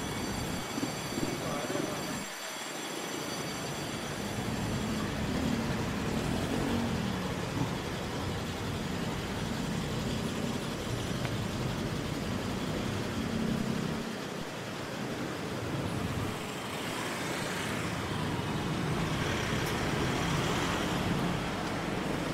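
Road traffic on a city street: cars and motorcycles passing, a steady wash of engine and tyre noise that swells and fades as vehicles go by.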